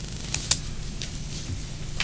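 Meeting-room tone: a steady low hum with faint background hiss, broken by two brief sharp clicks about a third and half a second in.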